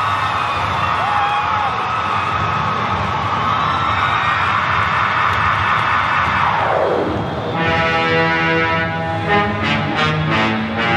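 Loud dance-routine music. About seven seconds in, the mix drops away in a falling pitch sweep, and a new section of held chords comes in.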